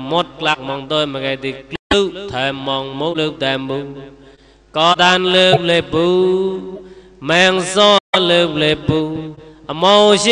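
A monk's male voice chanting in a sing-song recitation, with long held notes that bend in pitch between phrases. The sound drops out abruptly for an instant twice.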